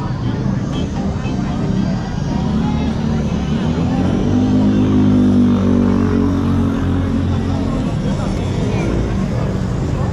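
A motor scooter engine running as it passes close by, building up about four seconds in, loudest around the middle and fading a couple of seconds later, over a background of voices and street noise.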